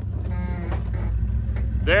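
2004 Jeep LJ's 4.0-litre inline-six running with a steady low rumble as it crawls slowly over rock. About half a second in, a short pitched call or squeal is heard over it.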